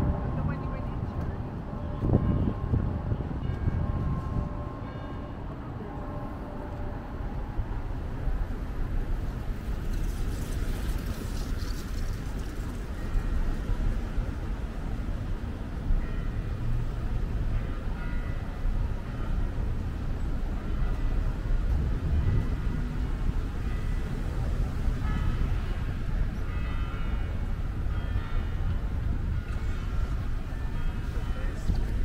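City street traffic at an intersection: a steady low rumble of cars running and passing, with passersby talking in the background.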